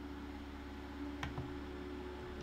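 One faint click about a second in, a button press on a Feelworld L2 Plus live video switcher, over a steady low hum of room tone.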